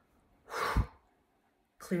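A woman's single sharp exhale, a breathy puff of about half a second that ends with a thump of air on the microphone.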